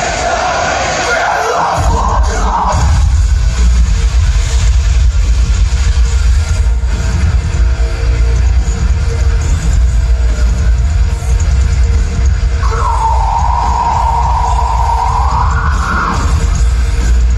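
Live metalcore band playing loud through an arena PA, heard from the stands: singing over the first couple of seconds, then heavy drums and bass come in. About twelve seconds in, a long held sung note starts and rises in pitch at the end.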